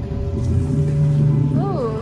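Ambient electronic soundscape from an immersive exhibit's sound system: steady low drones, with one pitch that swoops up and back down near the end.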